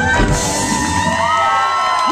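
A live rock band's last chord ringing out and dying away about one and a half seconds in, under loud crowd cheering with whoops and shouts.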